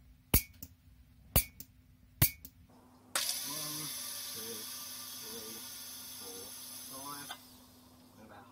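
Cigarette-lighter piezo igniter clicking three times, each press a sharp snap followed by a softer click, as it sparks to an M3-bolt electrode. About three seconds in, a steady hiss starts; it stops suddenly about seven seconds in.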